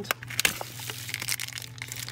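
Crinkly plastic blind-bag wrapper being squeezed and pulled open by hand: a dense, irregular run of crackles and crinkles.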